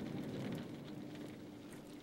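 Beechwood fire crackling in a malt kiln's firebox, a dense patter of small crackles that slowly fades, with a faint steady hum coming in about halfway.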